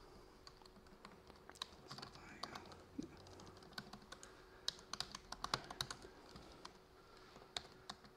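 Laptop keyboard being typed on: faint, irregular key clicks.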